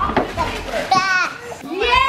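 Children's excited, high-pitched voices and shouts, with one loud squeal about a second in.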